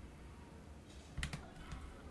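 Faint computer keyboard keystrokes: a few soft clicks about a second in, then a couple more near the end.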